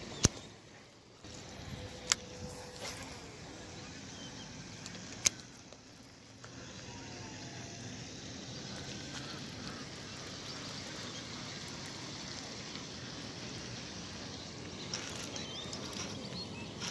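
Steady outdoor background noise, broken by three sharp clicks in the first five seconds.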